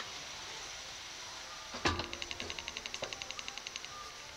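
Amusement-ride seat restraint mechanism: a sharp clunk about halfway through, then a fast, even ratcheting click, about eleven clicks a second, for about two seconds.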